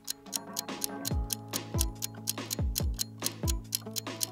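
Quiz countdown music: a rapid, steady clock-like ticking over a short music bed, with deep bass notes that drop in pitch every second or so.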